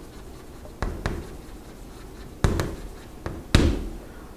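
Writing: a handful of sharp taps and short scratches of a writing tool. The loudest two come about two and a half and three and a half seconds in.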